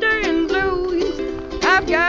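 Music: a blues-style song, a voice singing with plucked-string accompaniment and sliding up into a note late on.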